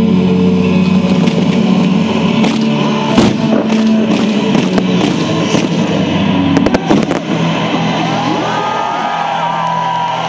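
Fireworks display set to music: a firework bang about three seconds in and a quick run of sharp bangs and cracks about six and a half to seven seconds in, over loud music. The music drops back near the end.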